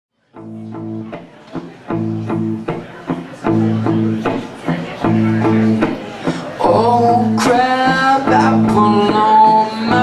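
Live song intro on a semi-hollow electric guitar: rhythmic chords strummed in a steady repeating pattern. A man's singing voice joins over the guitar about two-thirds of the way through.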